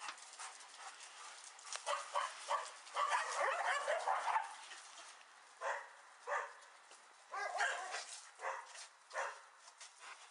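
Several dogs barking, fairly faint: a quick flurry of overlapping barks for a couple of seconds, then single barks every half second to a second.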